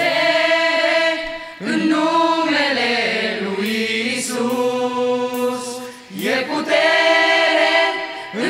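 Mixed choir of young women's and men's voices singing a Romanian song in sustained phrases, with two brief breaks between phrases, about a second and a half in and again around six seconds.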